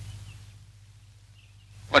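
Quiet pause in film dialogue with a faint, steady low hum from the old soundtrack. A man starts speaking right at the end.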